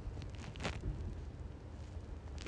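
Faint background hum and hiss, with one brief soft sound a little over half a second in.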